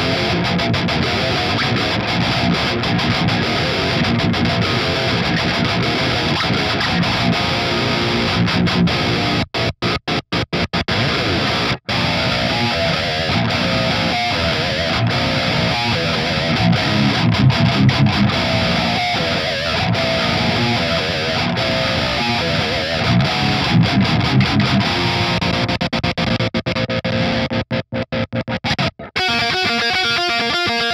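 Seven-string electric guitar with active EMG pickups, played through the lead channel of a Peavey 6505+ amplifier: heavily distorted metal riffing with no backing track. It is played first on the bridge EMG 81-7 pickup, then on the bridge and neck pickups together. The stop-start riffing cuts abruptly to silence about ten seconds in and again near the end.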